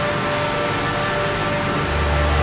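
A dense, hiss-like noise wash with a few steady held tones, part of an industrial techno DJ mix; a heavy bass comes in near the end.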